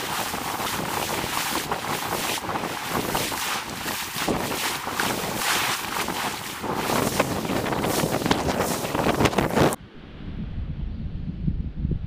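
Wind buffeting the microphone over waves washing onto the beach, a loud, steady rush. It cuts off suddenly near the end, leaving a low wind rumble.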